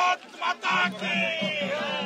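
Male voices chanting in chorus with long held and sliding notes over a music track, breaking off briefly just after the start before resuming.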